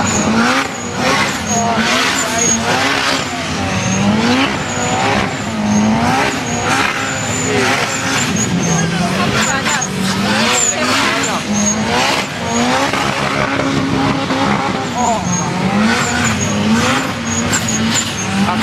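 High-boost turbocharged Toyota engine revving hard during a burnout, its pitch repeatedly rising and falling as the throttle is worked. The rear tyres are screeching as they spin against the track.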